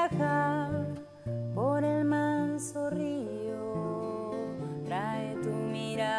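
A woman singing a slow song to her own acoustic guitar, holding long notes that slide into pitch.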